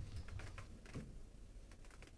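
Faint, scattered small clicks and light rustling over a low room hum.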